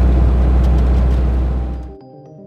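Steady low drone of a 1995 Fiat Ducato 2.5 TDI motorhome's turbodiesel engine with tyre and road noise, heard inside the cab while driving, fading out near the end.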